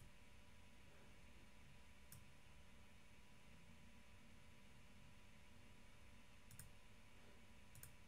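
Near silence: room tone with a few faint clicks, one about two seconds in and two more near the end.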